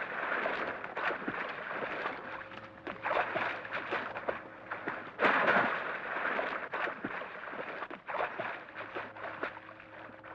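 Film sound effect of water splashing and churning, surging strongly about five seconds in, with many small crackles through it.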